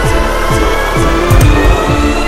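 Instrumental chillstep/dubstep electronic music: a steady beat with deep low hits, held synth notes and a slowly rising high tone.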